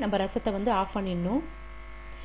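A woman's voice speaking for about the first second and a half, then a faint steady electrical hum.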